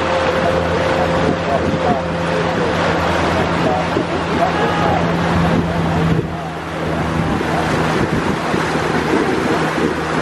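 A boat's motor running with a steady low drone, mixed with water rushing past the hull and wind on the microphone.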